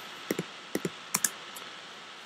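Computer keyboard keystrokes: about six short clicks in three quick pairs, over a faint steady hiss.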